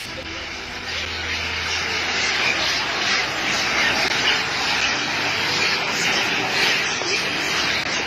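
A steady, dense din from a large troop of long-tailed macaques fighting and screeching in a street, growing a little louder about a second in.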